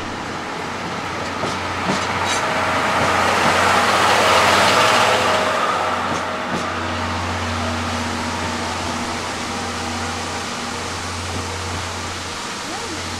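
Passenger coaches of a steam-hauled train rolling past at low speed, with a few sharp wheel clicks. The sound swells as the last coach passes, about four to five seconds in, then eases as the train pulls away.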